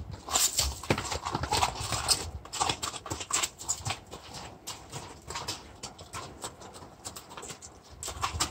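A mule's hooves stepping on gravelly, muddy ground as it walks about: irregular clopping footfalls, busier in the first half and sparser later.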